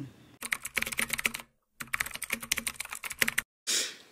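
Rapid light clicking in two runs, broken by a brief dead silence about a second and a half in.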